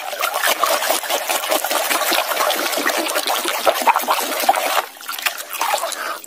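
Muddy water sloshing and splashing in a tub as a plastic mask is scrubbed by hand under the surface: a busy, continuous run of small splashes that eases briefly near the end.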